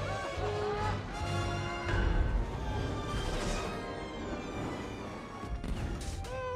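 Film score music, with a heavy low thud about two seconds in as the armoured robot Baymax lands on the bridge tower, and a swish a little over a second later.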